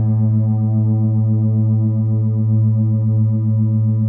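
Meditation music: a sustained electronic drone on one held chord, with a strong low tone and a higher tone that pulses a few times a second, like a monaural beat.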